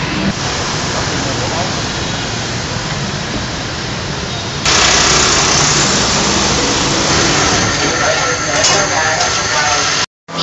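Steady street traffic noise from passing motor scooters, with indistinct voices in the background. About halfway through it cuts suddenly to a louder, hissier noise.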